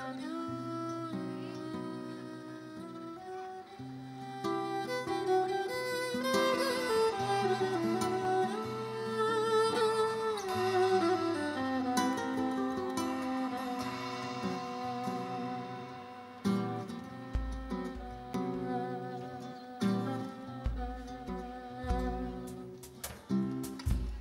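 Live instrumental music: violin and cello play a slow, sliding melody over guitar. About two-thirds of the way in, deep drum hits come in and grow more frequent toward the end.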